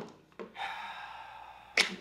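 A man's long breathy sigh of about a second, fading slightly, just before he starts to speak.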